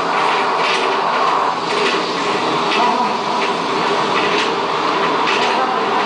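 Live experimental noise music: a dense, steady electronic din with held tones underneath and irregular clattering hits over it, about one or two a second.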